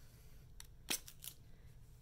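Faint handling sounds as a plastic pump bottle of rubbing alcohol and cotton rounds are picked up: three short clicks, the loudest about a second in.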